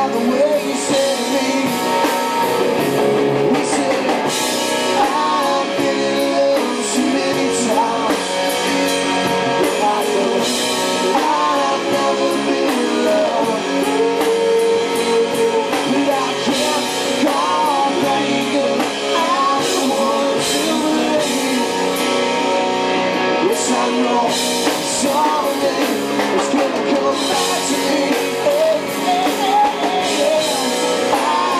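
Live rock band playing: electric guitars and a drum kit with cymbals, and sung vocals over them.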